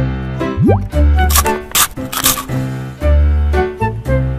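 Upbeat children's background music with a bouncy, repeating bass line. A quick rising slide sound comes about half a second in, and a few short bursts of hiss come around the middle.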